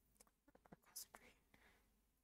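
Faint whispered muttering from a woman under her breath, with a few soft mouth clicks and a short hiss about a second in.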